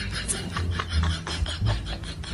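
Cat gnawing and mouthing a felt toy mouse: a quick run of scratchy, rasping strokes, several a second.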